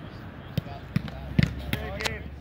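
Soccer balls being struck during goalkeeper drills: four sharp thuds in quick succession, the loudest about halfway through, with distant voices calling.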